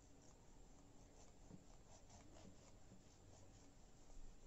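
Faint, quick, scratchy strokes of a knife sawing through a sponge cake, about five a second from about one second in to near three seconds.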